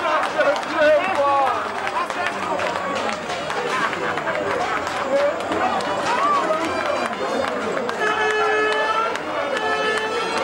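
Excited voices shouting and cheering over one another at a goal in a football match, with a steady held note sounding about eight seconds in.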